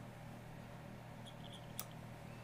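Quiet room tone with a steady low hum, a few faint high squeaks, and one soft click near the end from a computer mouse as a browser window is dragged across to another monitor.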